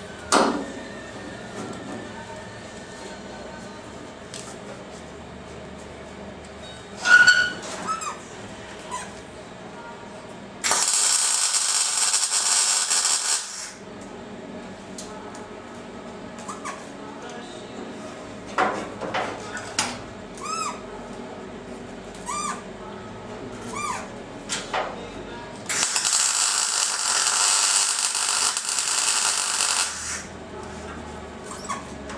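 MIG welder welding a steel body panel in two bursts of steady hissing, each about three to four seconds long, one about eleven seconds in and one near the end.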